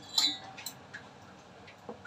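Stainless-steel tumblers clinking as they are set down on a counter: one clear ringing clink just after the start, then a few lighter taps.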